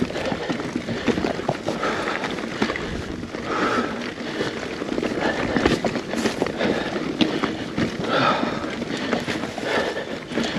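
Mountain bike on 2.6-inch tyres climbing a rocky dirt trail: tyres crunching over dirt and stones, with a constant rattle and clatter from the bike. The rider breathes hard, with heavy gasps every few seconds.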